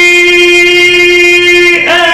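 A man reciting the Quran in the melodic tajweed style, holding one long, steady note, with a brief turn of pitch near the end.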